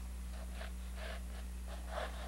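Faint scratching of a charcoal stick sketching on a canvas, a series of short strokes, over a steady low electrical hum.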